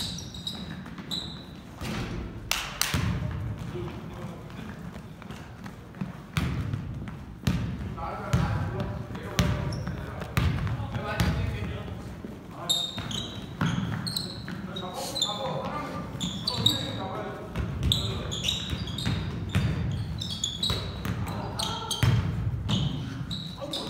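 Pickup basketball game on a hardwood court: the ball thuds as it is dribbled and bounced, sneakers give short high squeaks, and players' voices come and go.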